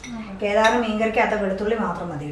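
A metal spoon clinking and scraping against a glass serving bowl and dishes as curry is served, with a voice talking over it.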